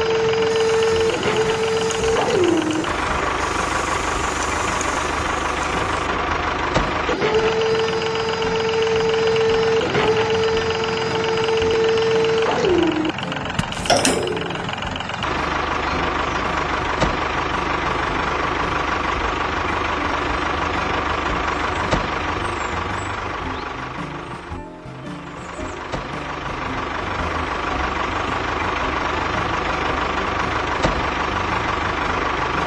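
Tractor engine sound running steadily. A high steady whine holds for a couple of seconds at the start and again for about five seconds from 7 s, each time dropping in pitch as it ends, and a quick sweep comes about 14 seconds in.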